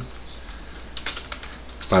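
Computer keyboard typing: a short run of light keystrokes about a second in.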